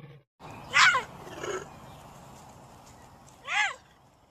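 The tail of a lion's roar cuts off at the very start. Then a cougar gives short, high, whistle-like chirps that rise and fall in pitch, the loudest about a second in and another near the end.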